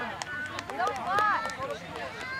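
High-pitched children's voices calling out and chattering, loudest about a second in, with a few faint clicks.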